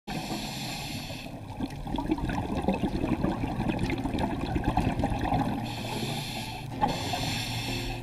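Underwater scuba breathing through a regulator. An inhale at the start, then a few seconds of crackling exhaled bubbles, then another inhale about six seconds in.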